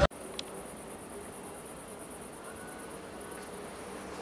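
Crickets chirping in a steady, evenly pulsing high trill, with one faint click about half a second in.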